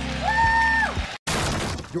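A single 'Woo!' cheer rises and holds for about a second over a low hum. A moment after it breaks off, a crash sound effect with a shattering noise bursts in and lasts just over half a second.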